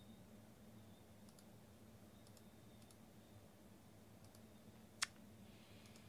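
Near silence: a few faint, spaced computer mouse clicks and one sharper click about five seconds in, over a faint steady low hum.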